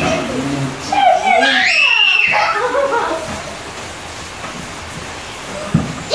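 Children's voices squealing and calling out during play, with a long high-pitched squeal about a second in, then quieter for the last few seconds.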